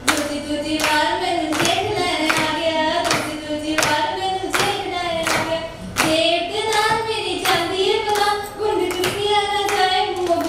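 A woman singing solo into a microphone, her voice amplified, with steady rhythmic hand-clapping keeping time, about two to three claps a second.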